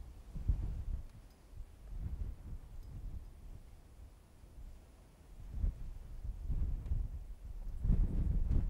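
Wind buffeting the microphone in uneven low gusts, easing off in the middle and picking up again over the last few seconds.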